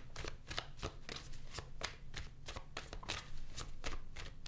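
A deck of tarot cards being shuffled by hand, packets of cards slipping from one hand into the other: a continuous run of quick, papery card clicks, about four a second.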